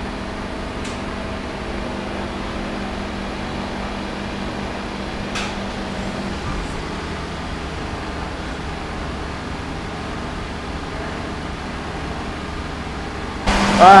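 A steady mechanical hum with a low drone, its tone shifting slightly about halfway through, and a couple of faint clicks. Near the end it gives way to louder voices over music.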